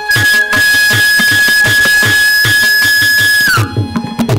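Carnatic classical music: a bamboo flute holds one long high note for about three and a half seconds, then slides down and stops. Steady mridangam strokes run underneath.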